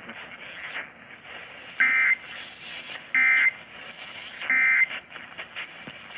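Three short Emergency Alert System end-of-message data bursts, the warbling digital SAME tones, each about a third of a second long and about a second apart, marking the end of the alert. They are received over an AM broadcast radio with a steady background hiss.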